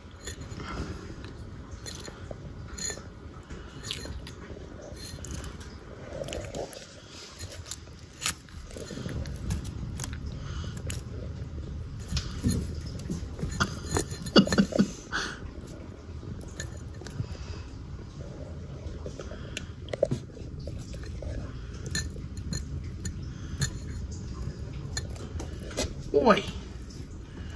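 Black-breasted leaf turtle eating a nightcrawler from a terracotta dish, heard up close: many small scattered clicks and snaps of its jaws on the worm, with its claws knocking and scraping on the wet clay dish. It is loudest around the middle, when the turtle lunges and tugs at the worm.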